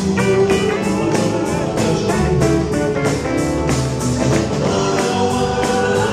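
Live rock-and-roll band playing: electric guitar over drums with a steady beat.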